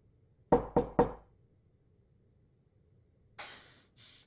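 Three quick knocks on a door, about a quarter second apart, about half a second in.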